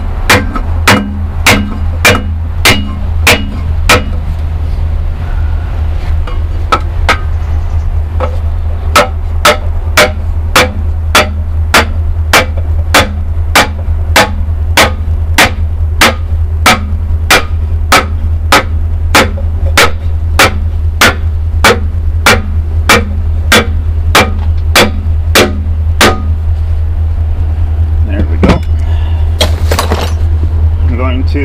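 A small sledgehammer strikes an ash board laid on a cylinder liner, driving the steel liner down into a Perkins 4-236 diesel engine block. The sharp whacks come about two a second, thin out for a few seconds early on, then run steadily until they stop a few seconds before the end. A steady low hum runs underneath.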